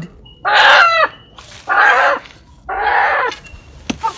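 A chicken with its legs tied squawks three times, loud calls about half a second each, while it is held and pushed inside a man's jacket.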